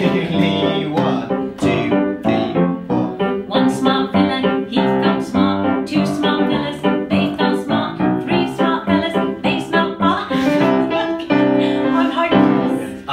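Piano playing a brisk accompaniment, chords and notes struck in a steady rhythm of about three to four a second.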